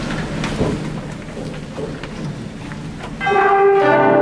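Audience noise with scattered claps, then about three seconds in a concert band comes in together on a sustained chord with bell-like tones.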